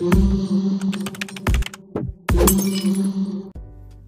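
Channel intro music sting: several heavy hits with deep booms under them and a held low note. It drops away to a faint low hum about three and a half seconds in.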